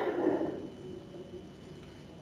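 A man's breath, a soft rush that fades out within about the first second, followed by quiet room tone.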